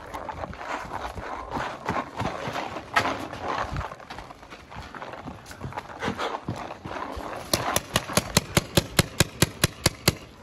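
Running footsteps on a dirt field with the rustle of gear, then, late on, a paintball marker firing a rapid string of sharp shots, about six a second.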